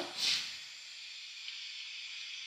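Faint steady hiss of recording background noise, with a short soft breath just after the voice stops at the start.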